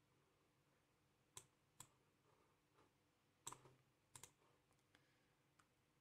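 Near silence with a few faint clicks of a computer mouse, the last two coming as quick pairs.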